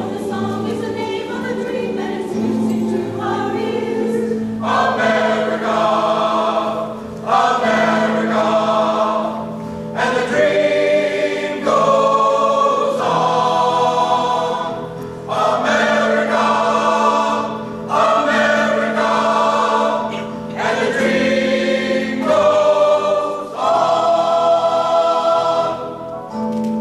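Mixed choir of men's and women's voices singing together in full voice, phrases swelling and breaking off every few seconds over a steady low held note.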